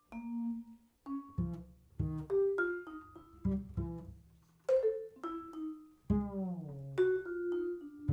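Jazz duo of vibraphone and upright double bass: mallet-struck vibraphone notes ring out over a plucked walking bass line, with one note sliding down in pitch about six seconds in.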